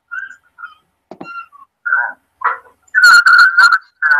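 Garbled, distorted audio coming over an internet call line as a caller connects: choppy bursts squeezed into a narrow, whistly band. It is loudest and crackling in the last second.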